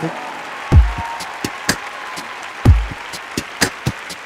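Audience applause under the opening of a live band's instrumental intro: a deep drum hit about every two seconds, with lighter percussion ticks in between.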